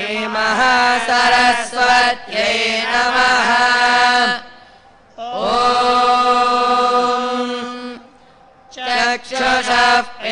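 Male voices reciting Vedic mantras in a chant held on a nearly level pitch. Three long phrases are broken by short breath pauses about four and eight seconds in.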